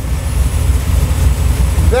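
Carbureted 350-cubic-inch V8 with a Holley 4150 Brawler 950 CFM carburetor idling steadily with a low, pulsing exhaust note. It is a freshly rebuilt carburetor's first run, the engine still warming up with the idle set a little high at around 1,100–1,200 rpm.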